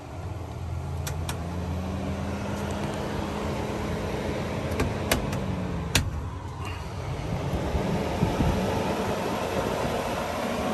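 RV roof vent fan running: its motor hum rises in pitch as it speeds up, holds steady, then falls about six seconds in and climbs again. There are sharp clicks from its knob and rocker switch a second in and again around five to six seconds in.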